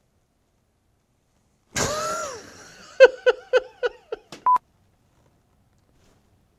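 A person's voice: a drawn-out vocal reaction that falls in pitch, then a quick run of about six short bursts of laughter. A brief steady high tone sounds near the end.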